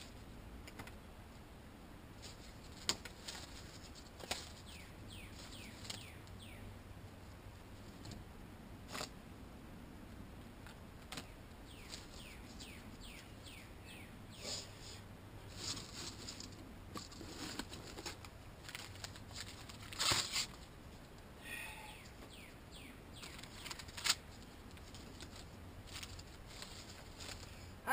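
Quiet, scattered snaps and crackles from a newly lit small twig fire, with a louder cluster of snaps about twenty seconds in. Runs of quick, high, downward-sweeping bird chirps come several times in the background.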